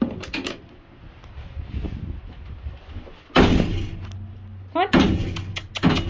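Metal horse-trailer door latch clicking open, then a loud clattering burst about three and a half seconds in as the trailer door or divider swings, with a low rumble after it.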